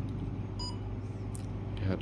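A single short electronic beep from a SOUTH N6+ total station about two-thirds of a second in, marking the completion of a distance measurement, over a steady low hum.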